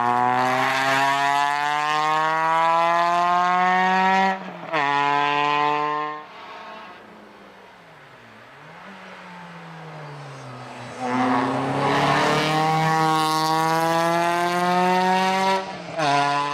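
Renault Clio hillclimb car's four-cylinder engine at full throttle, its pitch climbing steadily, with a short break for an upshift about four seconds in. It fades to a distant sound for several seconds in the middle, then comes back loud, climbing again, with another brief upshift near the end.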